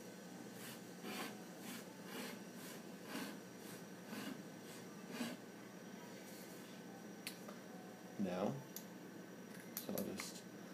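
Faint scratching of a Parker Sonnet fountain pen's gold-plated steel nib on paper, drawn in quick looping strokes about twice a second for about five seconds. A brief murmur of voice comes a little past eight seconds.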